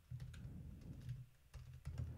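Faint typing on a computer keyboard: an irregular run of light keystrokes as a short command is typed.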